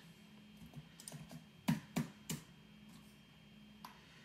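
Typing on a computer keyboard: a run of light key clicks with a few louder strokes around the middle, then a single key press near the end.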